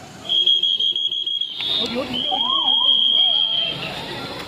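Police whistle blown in two long, steady, high blasts, the second starting about two seconds in, with people talking around it.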